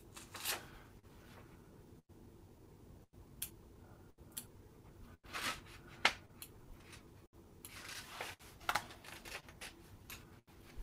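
Faint, scattered rustles and small clicks of hands and fly-tying tools working thread and hackle at the vise, with a sharper click about six seconds in.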